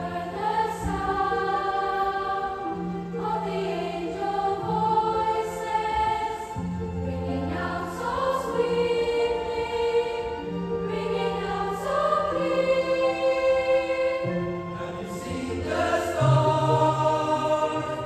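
School children's choir singing a Christmas carol with a symphony orchestra, the voices over held low orchestral notes that change every couple of seconds.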